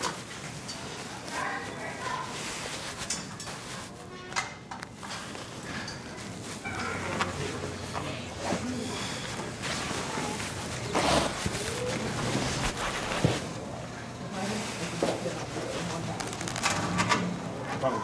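Indistinct background voices with scattered knocks and clinks of gear being handled.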